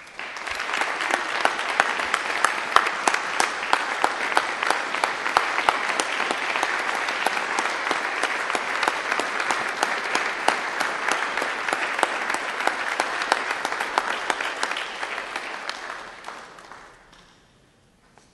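Audience applauding, many hands clapping steadily, then dying away near the end.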